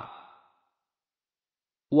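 A man's reading voice trails off at the end of a word over about the first half second, then near silence; his reading starts again right at the end.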